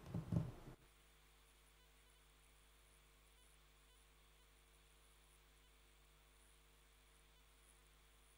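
Near silence: courtroom room tone with a faint steady hum, after a voice trails off within the first second.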